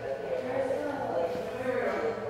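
Faint, indistinct background voices over a steady room hum.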